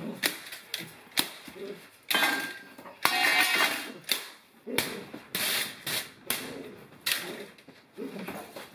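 Irregular sharp clicks and knocks with two louder scuffling bursts, about two and three seconds in, from a dog and a helper in bite-sleeve work on a tiled floor.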